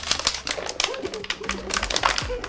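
Plastic water bottles crackling as they are squeezed and handled, a rapid, irregular run of sharp crinkles and clicks.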